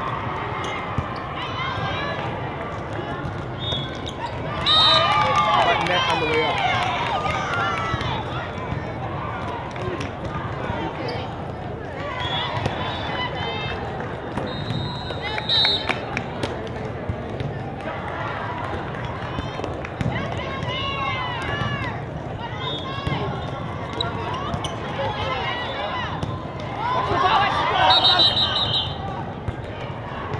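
Indoor volleyball rally in a large hall: players shouting calls over a steady background of hall chatter, with sharp ball contacts. Short whistle blasts sound about four seconds in, midway and near the end. The loudest shouting comes just before the last whistle.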